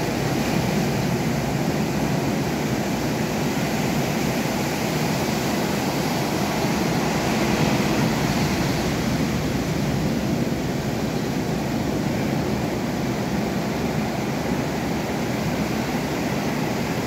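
Ocean surf breaking and washing up the beach, a steady, even rush of noise.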